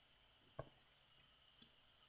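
Near silence with one short, sharp click about half a second in and a much fainter tick near the end: the tap that picks a new pen colour from the drawing program's palette.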